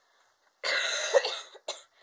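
A person coughing from an illness: one long, loud coughing bout starting about half a second in, then a short cough just after.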